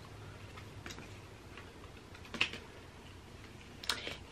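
Quiet room tone with three faint, short clicks from a slim lipstick tube being handled, the clearest about two and a half seconds in.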